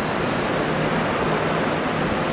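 Steady, even hiss of background noise with a faint low hum underneath, with no speech or distinct events.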